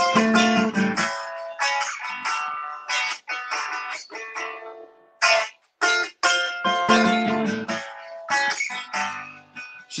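Guitar strumming chords as the instrumental opening of a song, with a brief pause about halfway through.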